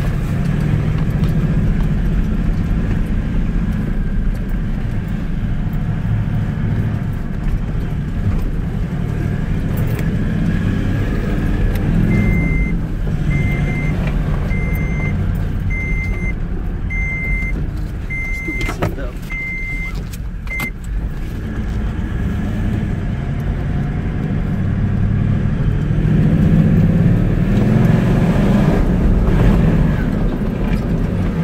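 V8 Toyota LandCruiser's engine droning steadily as it drives along dirt tracks, heard close up from a camera on the bonnet, and growing louder near the end. Partway through, a string of about eight short high beeps, roughly one a second, sounds and then stops.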